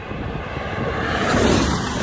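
A vehicle passing close by: its tyre and engine noise swells to a peak about one and a half seconds in, then begins to fade.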